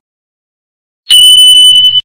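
Notification-bell sound effect from a subscribe animation: one bright, high ringing tone that starts sharply about a second in and holds steady and loud.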